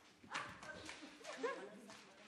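Faint short vocal cries that slide up and down in pitch, with a knock or footfall about a third of a second in.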